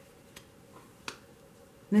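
Two short light clicks from tarot cards being handled on the table, the second one louder, about a second in.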